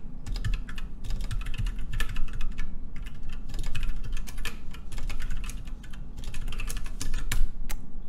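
Typing on a computer keyboard: a run of quick, irregular keystrokes with a brief lull about six seconds in.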